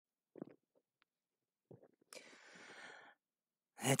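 A few faint clicks and bumps on a tiny cheap microphone, then about a second of breath hissing close into it and fading away.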